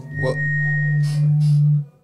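Short radio-station jingle between songs and talk: a held low synthesizer note with a brief high tone over it, cutting off near the end.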